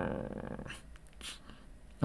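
A man's drawn-out, hesitant "I…" trailing off into a wavering hum and a breath as he pauses mid-sentence, with two faint clicks in the pause.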